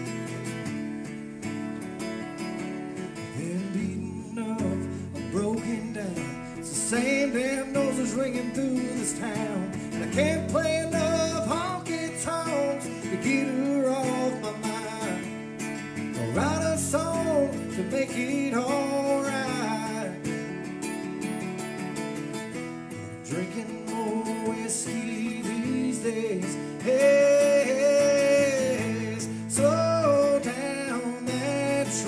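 A man singing a country song live, accompanying himself on a strummed acoustic guitar. The first few seconds are guitar alone before the voice comes in.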